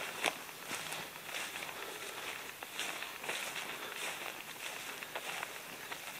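Footsteps through long dry grass: soft, irregular rustling steps.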